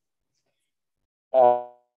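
Speech only: a man's single short hesitation sound, "à", about a second and a half in. The rest is silent.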